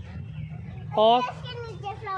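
Mostly speech: a voice speaks briefly about a second in, over a steady background murmur of children and people.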